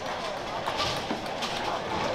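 Busy bowling-centre din: many voices talking at once, with a couple of short clatters.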